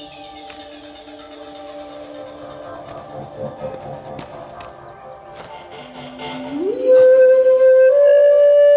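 Soft background score with long held notes. Then, near the end, a Chinese flute comes in loudly, sliding up into one long held note.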